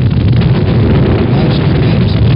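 Saturn V first-stage rocket engines (five F-1s) at ignition, a loud, steady rumble.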